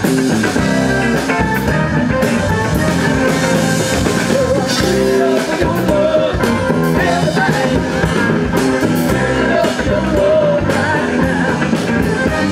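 A live rock band playing: strummed acoustic guitars, electric bass and a drum kit keeping a steady beat.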